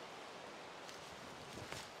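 Faint, steady outdoor background hiss in woodland, with a few slight rustles near the end.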